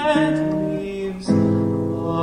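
Male voice and guitar performing an art song: a sung note with vibrato fades near the start, and a new guitar chord is plucked a little past halfway and rings on.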